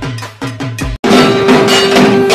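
Bengali dhak drumming: a few deep drum strokes, then an abrupt cut about a second in to louder, denser drumming with struck metal ringing along and a steady held tone.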